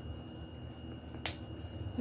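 A plastic snap button on a cloth diaper popping once, a single short sharp click about a second into a quiet stretch.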